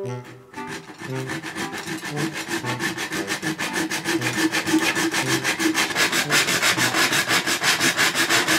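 Hacksaw cutting through a stainless steel chimney pipe: quick, even back-and-forth strokes of the blade on the metal, several a second, starting about a second in and going on steadily.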